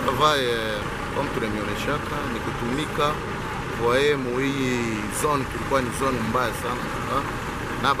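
A man speaking, over the engine noise of street traffic; a motorcycle goes past near the end.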